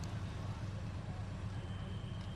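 Steady low rumble of outdoor street ambience, with vehicle and motorcycle engines running. A faint thin high tone comes in near the end.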